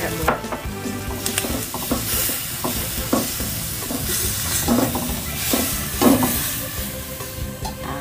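Whole shrimp with garlic, long beans and chilies sizzling in oil in a non-stick wok, stirred with a spatula that scrapes and taps against the pan several times.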